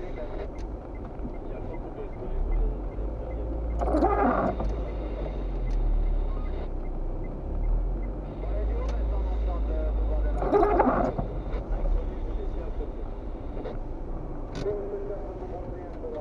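Inside a slowly moving car on a wet road: steady low engine and tyre rumble, with the windshield wipers making a sweep about every six and a half seconds, twice in this stretch, as on an intermittent setting.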